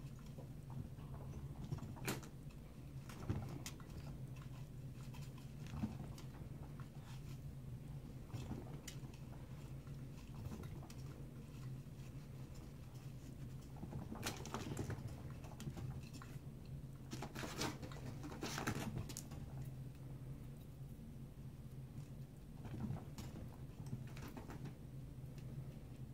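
A guinea pig scurrying and scrabbling on fleece bedding inside its cage, with scattered small clicks and two longer rustling bursts past the middle, over a steady low hum.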